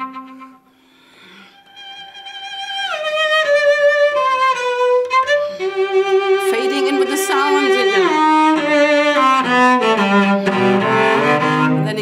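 Solo cello, a 1730 Carlo Tononi, bowed in a melodic phrase that starts softly and grows stronger and stronger, reaching full volume a few seconds in and staying loud. There are audible slides between some notes.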